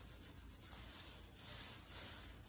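Small flock-coated foam roller being rolled back and forth over a wall, spreading glaze. It makes a faint soft rubbing that swells and fades with each stroke.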